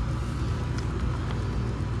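A steady low background rumble with a couple of faint clicks about a second in.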